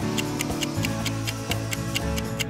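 Background music with a steady clock-like ticking, about four ticks a second: a quiz countdown timer running.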